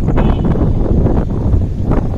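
Wind buffeting a phone microphone outdoors: a loud, even rumble, strongest in the low range.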